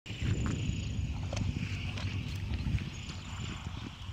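Outdoor ambience over a flooded field: wind rumbling on the microphone and a steady, high-pitched animal chorus, with a few faint clicks.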